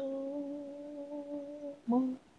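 A single voice, a cappella, holds one long steady hummed note, lasting nearly two seconds. The next short note starts right at the end.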